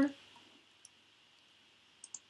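Quiet room tone with a steady hiss, broken by a single faint computer-mouse click a little under a second in.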